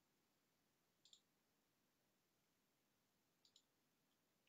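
Near silence with two faint computer mouse clicks, each a quick pair of ticks: one about a second in and one near the end, as pixels are coloured in an image editor.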